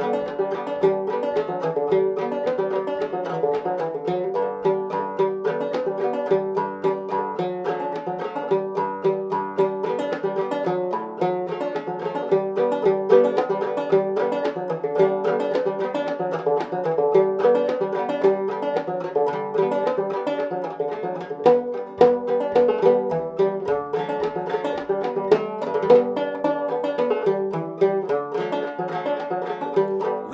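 An original 1840s William E. Boucher minstrel banjo, tuned about eAEG♯B, played solo: a steady, even run of plucked notes with no singing.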